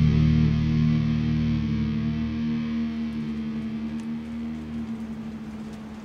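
Closing chord of a progressive folk/black metal song, played on distorted electric guitar, held and ringing out as it fades away.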